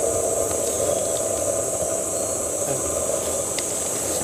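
Steady forest ambience: a constant high-pitched hiss-like drone over a low rustling haze, heard while walking through leafy undergrowth.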